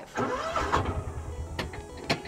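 Kawasaki utility vehicle's engine starting up, then running low and steady, with a couple of sharp clicks near the end.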